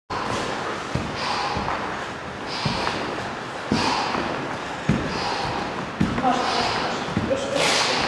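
Bare feet landing on a wooden gym floor in repeated squat jumps, about one thud a second. Breathy exhalations come between the landings.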